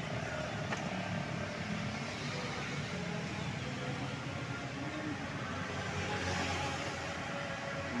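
Steady street traffic noise: motorcycles and cars running past, with a constant engine hum.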